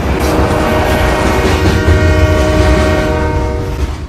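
A train horn sounding one long, steady chord over the heavy low rumble of the train.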